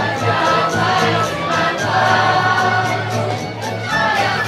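Live Hungarian folk dance music from a string band, with a fiddle-led melody over a steady bass line and a quick, even beat. Many voices sing along in unison.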